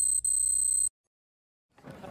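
Electronic buzzing beep sound effect with the on-screen score graphic: a steady, high-pitched tone that cuts off suddenly about a second in.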